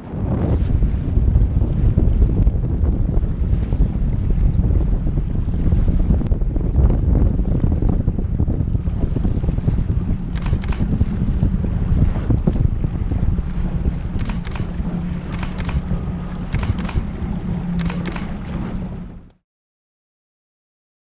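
Outboard motor of a Zodiac inflatable skiff running under way, a steady low drone mixed with heavy wind buffeting on the microphone and water rushing past the hull. A few short sharp sounds come in the second half, and everything cuts off suddenly near the end.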